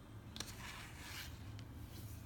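A click about half a second in, followed by a short rubbing scrape lasting under a second, over a low steady hum.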